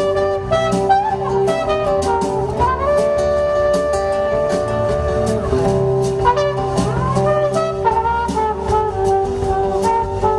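Live trumpet solo over a band with drums and a sustained chord underneath; the trumpet slides up into a long note held for about three seconds in the middle.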